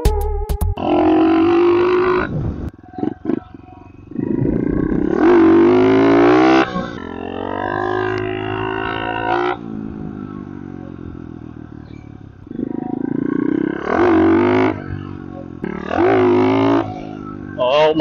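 110cc four-stroke SSR pit bike engine revved hard about three times, each rev climbing in pitch and then falling back toward idle, with a lull in the middle: throttle bursts for wheelie attempts that fail to lift the front wheel.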